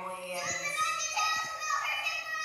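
Children's voices from an animated film's soundtrack, high and drawn out, like excited calls.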